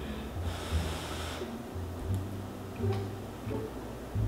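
A person breathing out hard through the nose for about a second while eating a forkful of pasta, followed by a few faint ticks of a fork.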